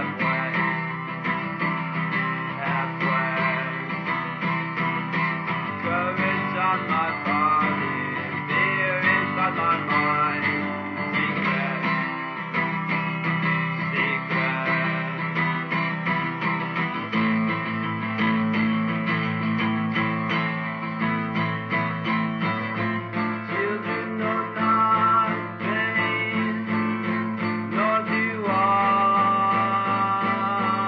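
Guitar music in a folk style, plucked and strummed, with the chord changing a couple of times in the second half.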